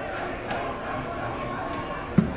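A crowd of players and supporters cheering and shouting in celebration, heard as a steady din of many voices.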